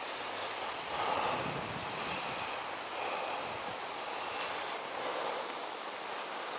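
Steady outdoor background rush, swelling slightly about a second in.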